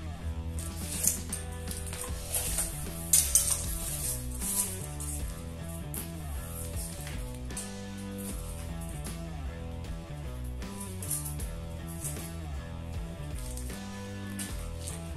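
Background music, with a few sharp metallic clicks and rattles from a steel tape measure being pulled out and handled, the loudest about three seconds in.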